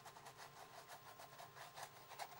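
Faint, rapid scrubbing of a paintbrush over dried texture paste on canvas, against a low steady room hum.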